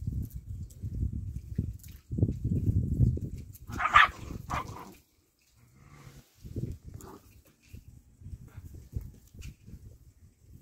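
Puppies play-fighting, with irregular low rumbling sounds through the first half and a short, high puppy yelp about four seconds in, followed quickly by a second one.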